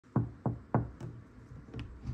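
Knuckles knocking on a wood-grain interior door: three sharp, evenly spaced knocks, then a softer fourth about a second in.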